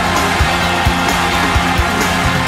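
Loud upbeat dance music with a steady drum beat, a little over two beats a second.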